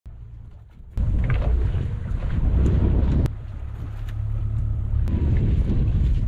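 Wind buffeting the microphone on an open fishing boat at sea: a loud, low rumble that jumps up about a second in and eases a little past the halfway point, with a few sharp clicks.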